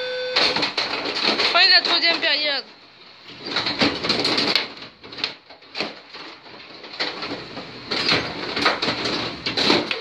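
A voice making wavering, drawn-out excited calls in the first two and a half seconds, then the irregular clicking and clacking of a Carrom Super Stick dome hockey table in play: rods pushed and spun, plastic players striking the puck.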